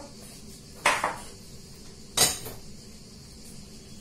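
Two sharp metallic knocks about a second and a half apart, the second the louder, as a stainless steel mesh sieve is handled against a mixing bowl before sifting.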